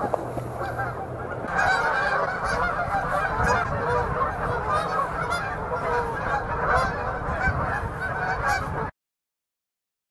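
A flock of geese honking, many calls overlapping, cutting off suddenly near the end.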